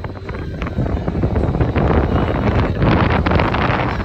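Wind buffeting the phone's microphone as it swings around on a spinning chain swing ride, growing louder from about a second in.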